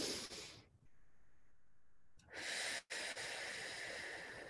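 A woman's slow, deliberate deep breathing into a close microphone: a brief breath sound at the start, then, after a pause, a long exhale beginning a little over two seconds in.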